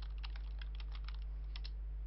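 Computer keyboard typing: a quick, irregular run of key clicks as a line of text is typed, over a steady low hum.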